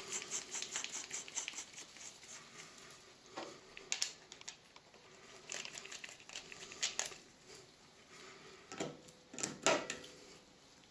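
Small metal parts clicking and knocking as a steel PCP regulator tube and its quick-release fill coupling are handled and fitted together. A quick run of light clicks comes first, then scattered single clicks, with the loudest knocks near the end.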